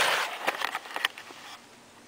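Rustling handling noise and a few light clicks as a handheld camera is swung around, fading after about a second and a half to faint room hiss.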